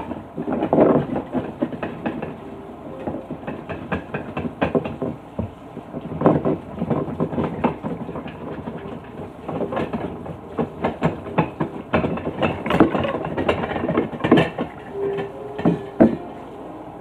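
Washing up at a kitchen sink: tap water running, with frequent irregular clatter and clinks of dishes being handled.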